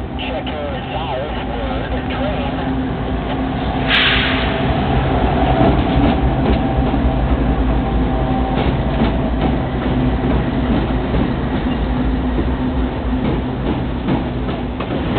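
A Canadian Pacific GE ES44AC and a leased GE AC44CW diesel-electric locomotive pass close by with their engines running under power. The wheels of the following intermodal cars rumble and clack over the rails. A single sharp crack comes about four seconds in, just as the sound swells to its loudest.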